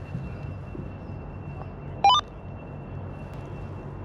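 A handheld radio being used to search for a radio frequency gives a quick run of electronic beeps that climb in pitch, about two seconds in. Under it are a faint steady high whine and a low steady hum.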